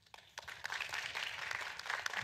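Audience applauding, a dense patter of many hands clapping that starts about half a second in.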